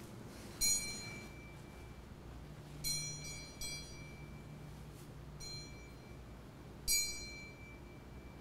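Small altar bell rung in five separate strikes, each high and ringing out, the first and last loudest: the signal for the blessing with the Blessed Sacrament, when the faithful bow.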